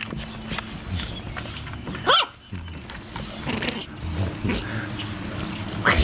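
Chinese Crested Powder Puff puppy giving one short high yelp about two seconds in, over close scuffling, clicking and chewing sounds of puppies playing and mouthing a cord against the microphone.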